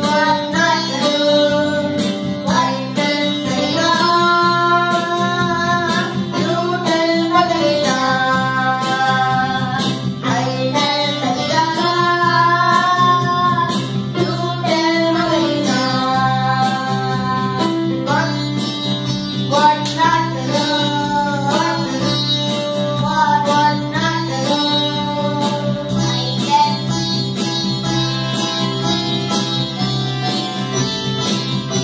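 A child singing a melody in long held, gliding phrases, accompanied by an electronic keyboard playing sustained chords underneath.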